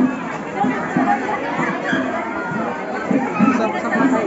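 Crowd chatter: many voices talking and calling out over one another, with no single voice standing out.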